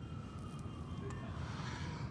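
City street background: a low traffic rumble under a faint tone that falls slowly in pitch, much like a distant siren.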